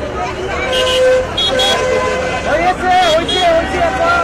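A crowd of people talking and calling out close by, with several short vehicle horn toots from street traffic mixed in.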